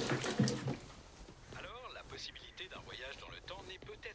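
Quiet speech: a low man's voice in the first second, then softer, murmured voices.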